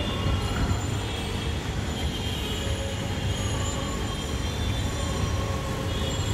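Children's bicycle with training wheels rolling over brick paving: a steady rattling rumble with a few faint thin whines above it.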